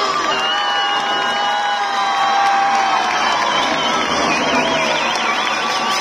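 Crowd cheering and shouting, with long high-pitched screams held over the noise and a wavering shrill note in the second half.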